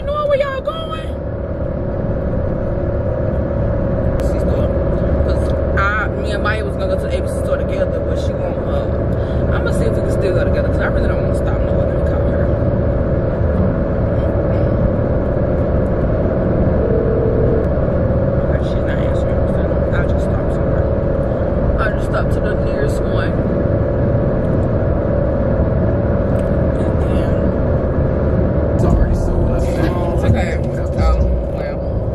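Inside a moving car's cabin at highway speed: steady road and engine rumble, with faint voice sounds at times.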